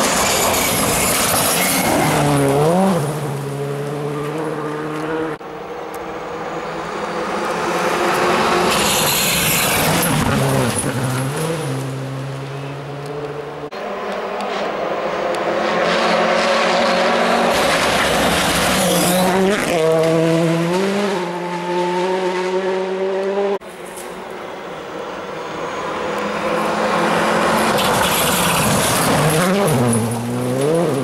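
Rally cars passing one after another at full throttle, about four in turn. Each engine climbs in pitch and drops sharply as the driver shifts or lifts, and each pass breaks off abruptly.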